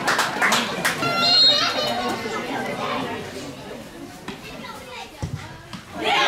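Footballers' voices shouting and calling across an outdoor pitch, with a few sharp knocks in the first two seconds; the voices die down after about two seconds, and there is a dull thud near the end.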